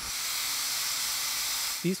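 Compressed air hissing steadily from the air-bearing pads of a heavy-duty air cart, blowing down against the floor to float a magnet coil on a cushion of air. The hiss stops near the end.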